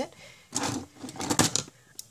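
Plastic pens and markers clicking and rattling against each other as a handful is gathered up from a pile, with a few sharp clacks about a second and a half in.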